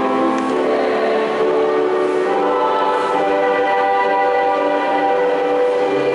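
A church choir singing a slow hymn in long, held notes.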